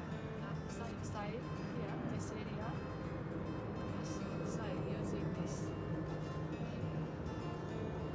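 Background music with a voice in it, playing steadily throughout.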